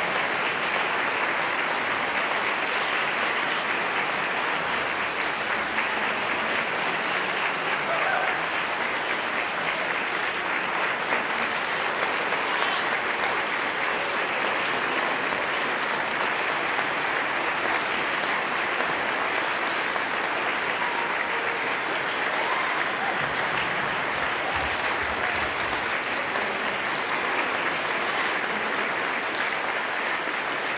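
Concert audience applauding steadily and unbroken at the end of a choral and orchestral performance.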